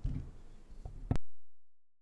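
Low rumble and shuffling picked up by the microphone, a small click, then a sharp knock a little over a second in, after which the sound cuts out to dead silence as the microphone is muted.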